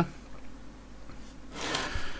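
Quiet room tone, then near the end a short, soft intake of breath just before speaking.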